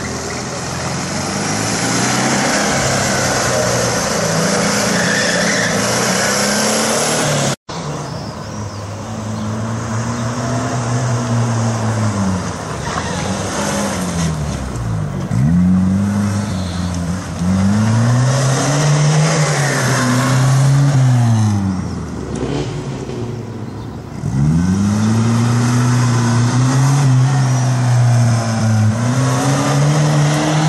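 An air-cooled Volkswagen Beetle flat-four engine runs fairly steadily for the first several seconds. After a cut, a classic Mini's four-cylinder engine revs up and drops off again and again as it is driven hard around a cone course.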